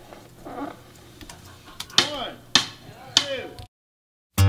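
Three sharp knocks about half a second apart, each with a short ring that drops in pitch, then the sound cuts off suddenly into dead silence.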